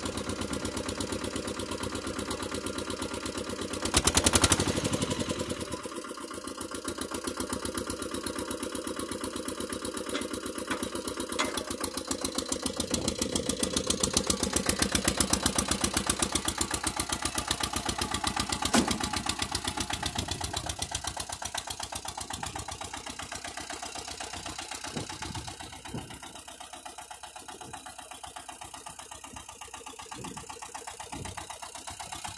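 Pasquali 991 tractor's engine running with a rapid, even chugging as the tractor is driven, shortly after a cold start. A loud clunk comes about four seconds in, and the engine grows louder for several seconds in the middle before easing off near the end.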